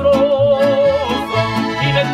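A mariachi band with accordion playing live. For about the first second a singer holds one long note with vibrato over the accordion, strummed guitar and a moving bass line, then the accompaniment carries on.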